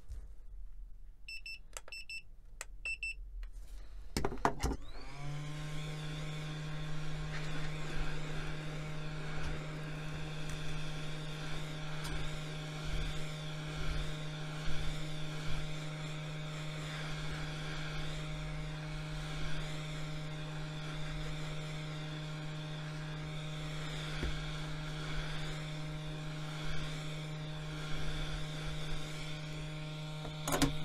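A few short electronic beeps from a digital thermometer, then a hot-air heat gun switches on about five seconds in and runs with a steady hum, heating the phone's back cover to soften its adhesive.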